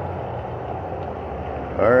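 Steady rush of the koi pond's circulating water flow with a low even hum under it, with the air stones switched off so there is no aeration bubbling.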